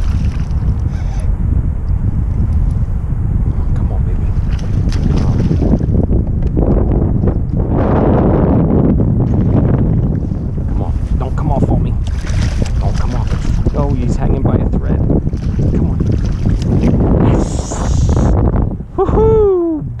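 Wind buffeting the camera microphone, over which a hooked smallmouth bass splashes and thrashes at the water's surface as it is played in to the kayak. An excited shout comes near the end.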